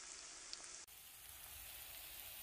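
Faint sizzling of chopped onions frying in oil in a pan, a soft even hiss that changes character abruptly a little under a second in.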